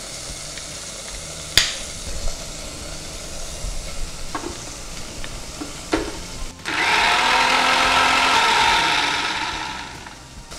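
Electric mixer grinder with a steel jar running for about three seconds, grinding mint chutney, starting a little before the seven-second mark and winding down near the end. Before it come a sharp click and a few light knocks as the jar is handled.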